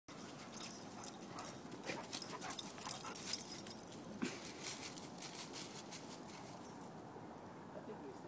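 Two dogs, one a Bernese mountain dog, scuffling and trotting through dry fallen leaves: crackly rustling and paw footfalls, busiest in the first five seconds and quieter after.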